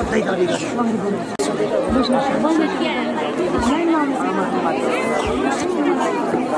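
A crowd of many voices speaking aloud at once, overlapping with no single voice standing out: a congregation praying out loud together.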